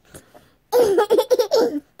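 A short burst of high-pitched laughter, broken into quick bursts, starting a little before the middle and lasting about a second.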